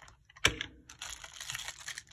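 A sharp click about half a second in, then the crinkling of a clear plastic wrapper as wrapped hard mints are picked up and handled.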